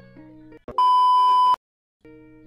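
A steady, high electronic censor bleep lasting just under a second, starting about three-quarters of a second in and cutting off abruptly into silence. Faint background music plays before it.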